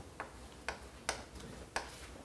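Chalk tapping against a chalkboard while short marks are written: four sharp, faint clicks about half a second apart.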